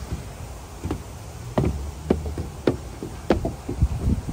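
Footsteps on wooden deck boards: a run of short, hollow knocks, roughly one every half second to second, from about a second in.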